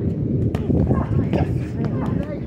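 Boxing punches landing on focus mitts: a few sharp pops spread across two seconds, over a dense low rumble.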